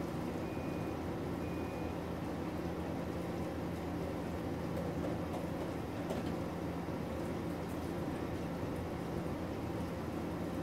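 Steady hiss with a low hum, like a fan or other appliance running, and two short high beeps about half a second and a second and a half in.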